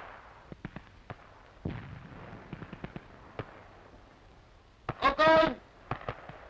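Scattered small-arms gunfire: about eight sharp single shots at uneven intervals over a faint background hiss. A short voice is heard about five seconds in.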